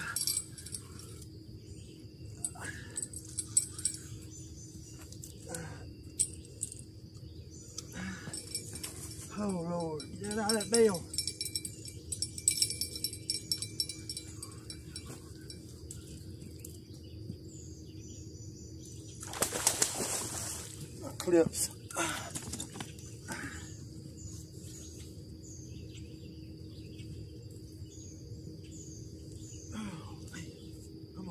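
Riverbank ambience with a steady high-pitched drone and faint bird chirps, while a man fighting a hooked fish makes brief wordless voice sounds about eight to eleven seconds in. A short loud rushing burst comes about twenty seconds in.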